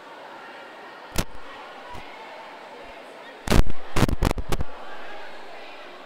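Sharp bangs over the steady murmur of a crowd in a large echoing room: one about a second in, then a rapid cluster of five or six louder ones about three and a half seconds in.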